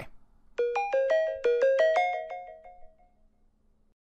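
Short closing jingle: a quick run of about ten bright, ringing notes starting about half a second in, which fade out by about three seconds.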